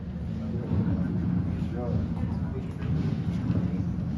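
Crowd chatter in a large gallery: many visitors talking at once, a steady murmur with now and then a single voice rising out of it, no words clear.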